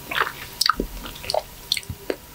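Biting and chewing juicy, stringy mango flesh straight from the peel: a quick, irregular run of short wet mouth clicks and smacks.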